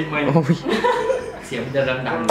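Men talking and chuckling, with short exclamations broken by laughter.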